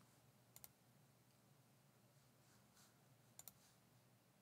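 Near silence with faint computer mouse clicks: a quick double click about half a second in and another near the end.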